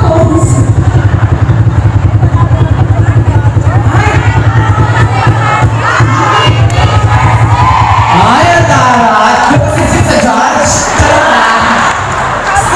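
A group yell: many voices shouting and chanting together over a fast, steady low beat. The beat stops about nine or ten seconds in, and the shouting and cheering carry on.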